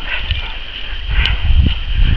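Footfalls and a dog on lead heard over a loud, uneven low rumble of wind and handling on a hand-held camera's microphone while walking a grassy bush track. There is a sharp click about a second in.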